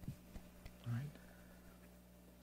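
A faint pause between a man's spoken sentences: a few small mouth clicks and a short, low vocal murmur just under a second in, over a steady low hum.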